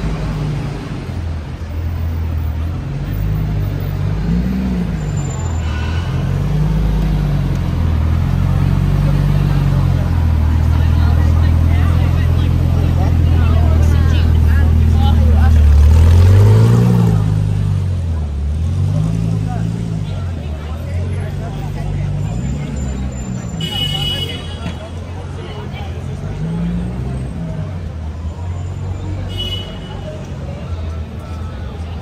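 Busy city street noise with a loud amplified low voice, likely a street performer, rising and falling in pitch and holding long notes. It is loudest about halfway through.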